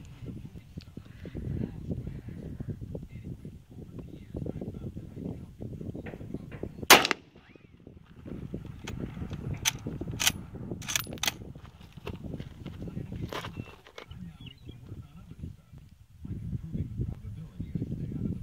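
A single loud rifle shot from a Mosin-Nagant 91/30 in 7.62x54R with its bayonet fixed, about seven seconds in. It is followed over the next few seconds by several quieter sharp clicks, with low wind rumble on the microphone throughout.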